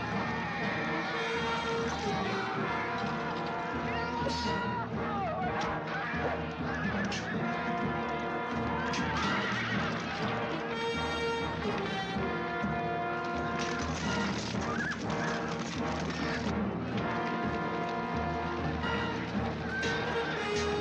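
Film battle soundtrack: horses whinnying several times and galloping hooves, over orchestral music, with scattered clashes and knocks.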